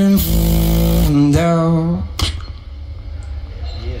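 Beatboxing with a microphone: a held, pitched vocal bass note, then a second sung tone, and a sharp snare-like click about two seconds in, after which the sound drops to a quieter stretch.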